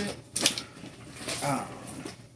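Plastic screw cap on a soda bottle being twisted open, with sharp clicks as the tamper seal breaks, and a short murmur from a voice about one and a half seconds in.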